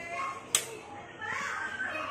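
Children's voices talking and playing in the background, with one sharp click about half a second in.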